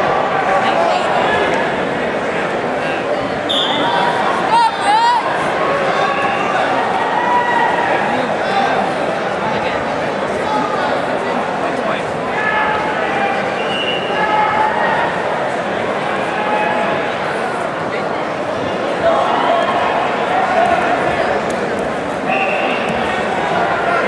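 Spectators talking and shouting over one another, echoing in a large gymnasium during a wrestling bout, with one louder moment about five seconds in.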